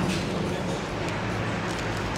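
Steady street traffic noise with a low hum, with a few faint ticks over it.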